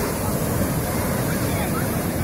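Sea surf breaking and washing up a sandy beach, a steady rush of waves, with wind rumbling on the microphone.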